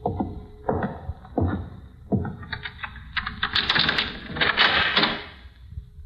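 Radio-drama sound effects of a door being unlocked and opened: four evenly spaced thuds, then a busy rattling and scraping of key, lock and door for about two and a half seconds.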